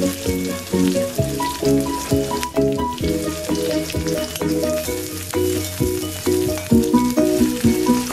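Chopped onions frying in hot oil in a metal wok with a steady sizzle, and a slotted steel spatula scraping and stirring against the pan now and then. Background music with a melody of short repeated notes plays over it.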